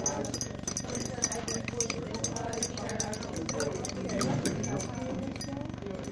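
Indistinct background voices with a running string of light clicks and clinks.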